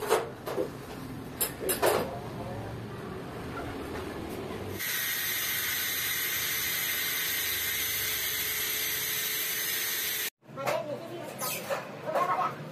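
Hand-held angle grinder cutting a steel bar overhead: a steady whine with a hissing edge that starts suddenly about five seconds in and cuts off abruptly about ten seconds in. Before it there are brief voices and a few sharp knocks.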